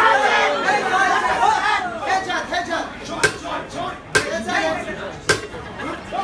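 Voices and chatter from the crowd, with three sharp smacks about a second apart in the second half: boxing gloves landing punches.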